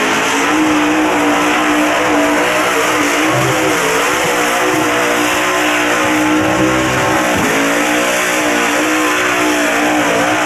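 Big-tire mud bog pickup's engine held at high revs as the truck churns through the mud pit. The revs waver, dip sharply for a moment about seven and a half seconds in, then climb straight back.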